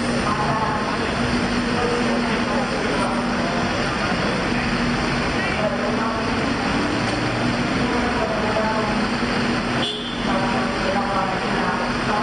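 Steady low hum of an idling vehicle engine under traffic noise, with a crowd of voices chattering.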